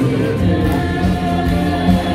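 Music with singing: a woman singing into a microphone over a backing track.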